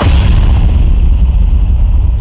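Deep, loud low rumble that starts suddenly and holds steady: a dramatic boom-and-drone sound effect from the show's soundtrack.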